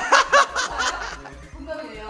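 People talking and laughing, with short bursts of laughter in the first second.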